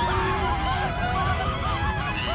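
Several high, squawky cartoon voices screaming in panic, overlapping and wavering in pitch, over a continuous low rumble from the burning ship.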